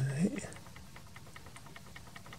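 A man's voice trailing off at the very start, then faint room tone with a low hum and faint, rapid ticking.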